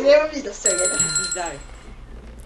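Bright, bell-like ringing chime, held steady from under a second in, from an on-screen 'like the video' banner sound effect, heard over chatter and laughter.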